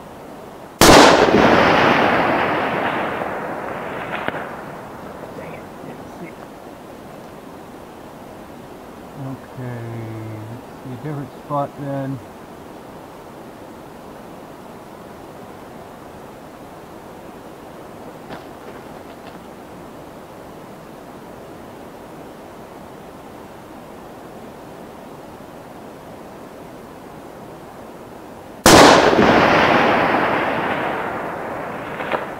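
Two rifle shots from a custom .308 Winchester firing 180-grain Flatline solid bullets, one about a second in and one near the end. Each sharp report trails off over about three seconds.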